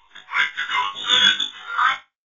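A voice-like sound in several short, uneven bursts with no recognisable words, from an animated cartoon soundtrack; it cuts off suddenly at the end.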